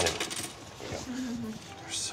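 A few light clinks and clicks in the first half second, hard objects knocking on a glass counter as a wooden box is handled over it.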